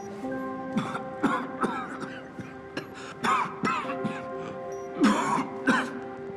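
People coughing and choking on smoke in repeated irregular fits, several harsh coughs and strained gasps, over a background score of sustained notes.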